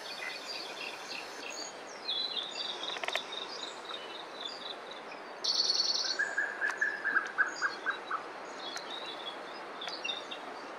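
Wild birds calling over a steady outdoor hiss: scattered high chirps, then about five and a half seconds in a loud, short buzzy call followed by a run of about nine notes that slows down.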